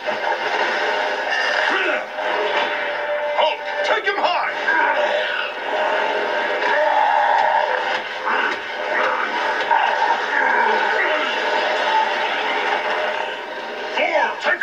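Animated action-series fight soundtrack played through a television speaker: dramatic music with fight sound effects, and a few sharp hits about four seconds in.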